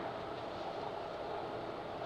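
Steady, even background noise with no distinct sounds in it: workshop room tone.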